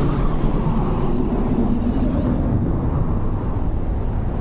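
A steady low rumble of noise, continuing on after a loud bang, with no clear tone or rhythm in it.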